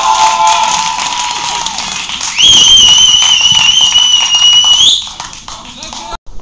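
Players and spectators shouting and cheering after a goal, with long held yells. A single long steady whistle then comes in about two and a half seconds in, lasts about two and a half seconds and rises in pitch just before it stops.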